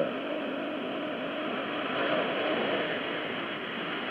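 Shortwave AM radio static: a steady hiss through the receiver's narrow audio band, with a faint steady whistle underneath, in a gap between the announcer's words.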